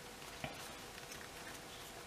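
Faint handling of a small cardstock box as a paper band is wrapped round it, with one small click about half a second in.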